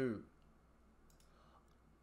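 A few faint, short clicks in a quiet room, after a man's voice trails off at the start.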